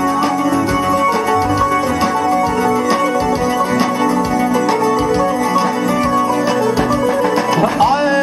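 Live band dance music: a drum kit beats steadily under a held, many-toned melody. Just before the end, a rising slide leads into a new phrase.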